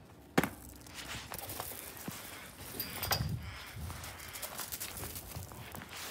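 Handling noise from a hand-held phone camera: scattered clicks and soft low thumps, with one sharp knock about half a second in.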